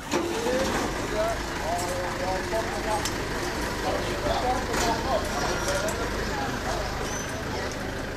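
A vehicle engine idling low and steady, with people talking in the background.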